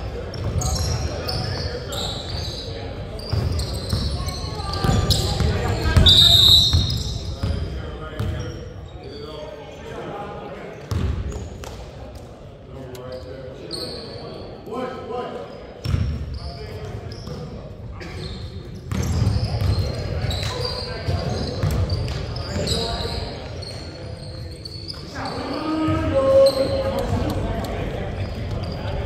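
A basketball being dribbled and bouncing on a hardwood gym floor, many sharp thuds echoing in a large gymnasium, over players' voices calling out.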